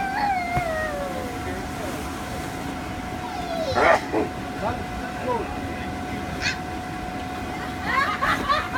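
Young children squealing and calling out while playing on an inflatable bounce house, over the steady hum and rush of its air blower. A falling, gliding squeal comes in the first second and a loud shriek about four seconds in.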